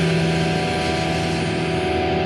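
Punk/post-hardcore band music: a distorted electric guitar chord held and ringing steadily, with no drum hits.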